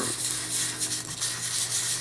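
220-grit sandpaper rubbed back and forth over a wooden Mossberg 500 shotgun stock wet with Tru-Oil, a soft repeated rubbing. This is wet-sanding into the fresh oil coat to raise a slurry that fills the wood grain.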